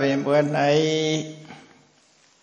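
A man's voice intoning a Buddhist chant, holding one steady note that fades out about a second and a half in.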